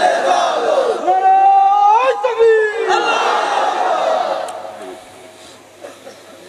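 A large crowd chanting a slogan in unison. There is one long, drawn-out shouted call from about one to three seconds in, rising in pitch near its end, then a wash of many voices that dies away about five seconds in.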